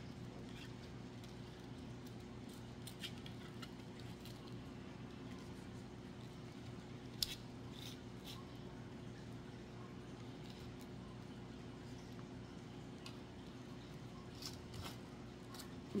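Faint scattered clicks and rustles of hands handling glittered foam flower pieces, pressing a freshly hot-glued piece into place, over a steady low hum. One sharper click comes about seven seconds in.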